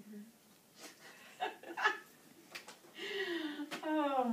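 Quiet rummaging in a cloth drawstring bag: a few short, soft rustles and clicks as a toy figure is pulled out. Near the end comes a woman's brief vocal sound.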